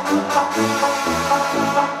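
Instrumental break of a recorded backing track played over a loudspeaker, with held notes above a steady, repeating bass beat between sung lines.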